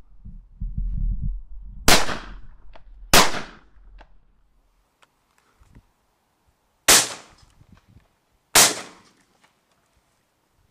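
Four shotgun shots at wood pigeons, fired as two pairs: two shots just over a second apart about two seconds in, then two more about five seconds later, each with a brief echoing tail. A low rumble comes in the first second or so, before the first shot.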